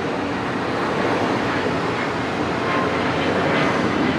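Steady outdoor rushing noise with no distinct events.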